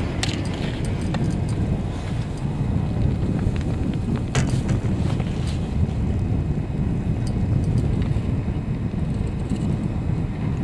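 Steady low rumble while riding a chairlift, wind on the microphone mixed with the moving chair, with a few faint clicks, the sharpest about four seconds in.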